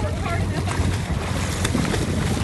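Steady low rumble of a boat's engine with wind buffeting the microphone, and water splashing alongside as a hooked shark thrashes at the surface.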